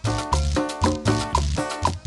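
Salvadoran chanchona band playing live in an instrumental stretch between sung lines: upright bass, guitar and drums keep a steady dance beat.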